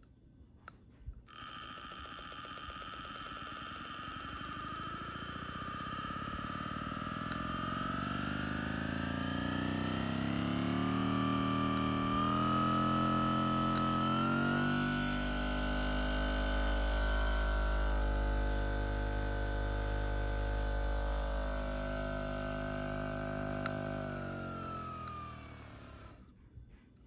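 RecoverFun Plus percussion massage gun's motor running unloaded, starting about a second in. Its hum and whine climb in pitch, first gradually and then in steps, as the power button steps it up through its speed settings. Near the end it winds down and stops.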